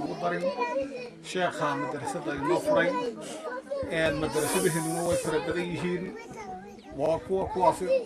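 A man speaking into a microphone, amplified. There is a brief burst of hiss about four seconds in.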